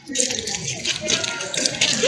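Faint, indistinct voices over a steady outdoor background hiss.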